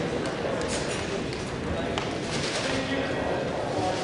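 Indistinct chatter of people in a gym, carrying in the hall, with a few sharp clicks scattered through it.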